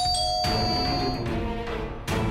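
Electric doorbell pressed once, giving a two-note ding-dong chime that starts sharply and rings on for about a second and a half, over dramatic background music.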